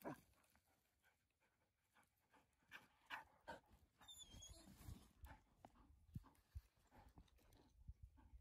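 Near silence: only faint scattered knocks and rustles, with a faint high, wavering whine about four seconds in.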